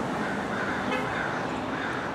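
Steady background noise of outdoor traffic, with a faint wavering higher tone in the second half.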